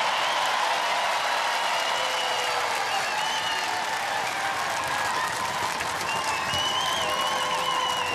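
Studio audience applauding, a dense steady clapping that holds at one level.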